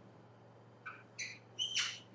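A marker squeaking on a whiteboard in about four short strokes during the second half, as a formula is written out, over a faint steady room hum.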